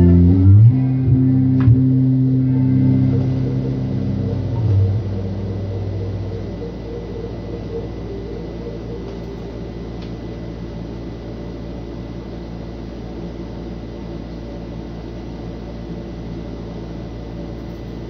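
Electric bass guitar through a bass combo amplifier: a few last low notes ring and fade over the first several seconds. After that only a steady low hum and hiss from the amp remains.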